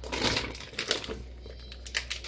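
Plastic grocery packaging and an insulated cooler bag rustling and crinkling as groceries are taken out by hand, with a few light clicks and knocks.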